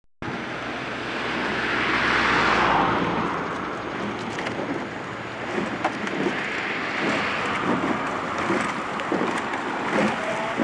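Wind buffeting the microphone outdoors, swelling in a gust around two seconds in, with faint short knocks and splashes through the second half.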